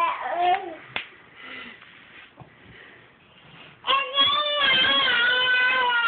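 A 45-week-old baby vocalizing: a short babble right at the start and a sharp click about a second in, then from about four seconds in a long, high-pitched held vocal sound with a slight waver.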